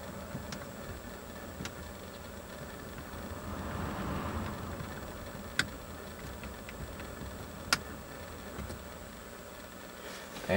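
Low, steady hum of a Toyota Corolla's four-cylinder engine idling, heard from inside the cabin with the climate fan running. A brief swell of hiss comes about four seconds in, and two sharp clicks of the climate-control buttons follow, a little past halfway and again two seconds later.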